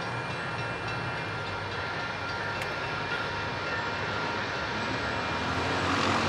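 Amtrak GE Genesis diesel locomotive approaching, its engine sound growing steadily louder over the last couple of seconds.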